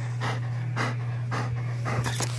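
Large dog panting close to the microphone, about two breaths a second.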